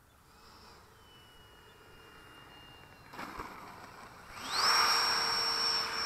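Whine of an RC MiG-17 model's electric ducted fan, faint at first as the jet runs low along the runway. About four seconds in, the throttle opens for the climb-out of a touch-and-go: the whine glides sharply up in pitch and gets much louder, then holds steady and high.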